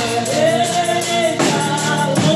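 A woman singing a gospel song into a microphone, holding a long note, with a jingle tambourine struck about one and a half seconds in.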